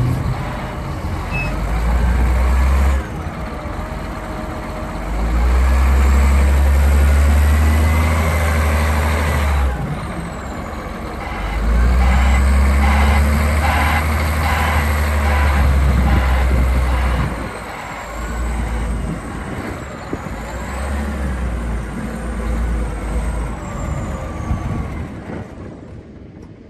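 2012 John Deere 744K wheel loader's diesel engine revving up in several surges of a few seconds each and dropping back toward idle between them, as the boom and bucket are worked hydraulically. A faint high whine rises and falls over the engine.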